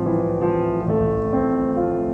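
Solo piano playing slow, held chords, with the notes changing to a new chord about every half second.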